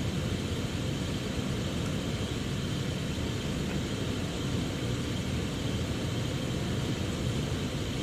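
Steady low rumble and hiss of a room's ventilation system running, with no distinct events.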